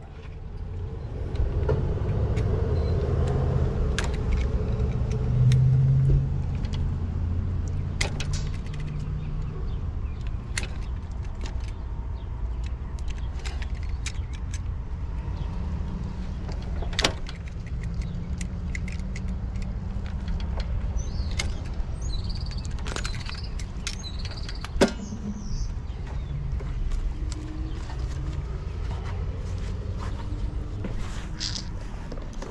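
A steady low rumble runs under scattered sharp clicks and metallic clinks as heavy service cables are handled and fed toward the main breaker's lugs.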